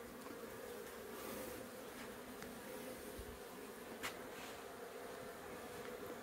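Faint, steady buzzing of Africanized honey bees flying in a swarm that is moving into a hive box, with one faint tick about four seconds in.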